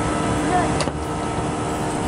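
A toy dart blaster firing once, a sharp snap a little under a second in, over a steady mechanical hum.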